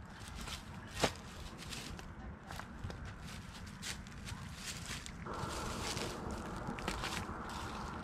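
Footsteps and light handling noises: irregular soft clicks and rustles, with one sharper click about a second in, over a steady low rumble. A steady hiss joins about five seconds in.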